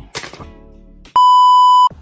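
A single loud, steady electronic bleep tone lasting under a second, starting just over a second in and cutting off sharply: a beep sound effect added in editing, at a cut between clips.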